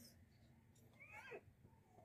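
Near silence, with one faint, short high-pitched call about a second in that falls in pitch.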